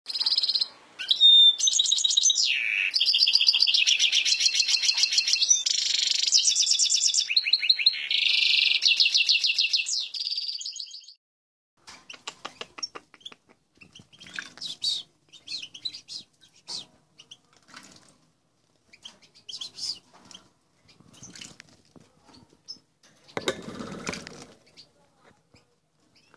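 Loud songbird song with fast twittering trills for about the first ten seconds, then a pause. Scattered faint chirps and small clicks follow from a European goldfinch at its bath dish, and just before the end comes a short burst of splashing and wing-fluttering as it bathes.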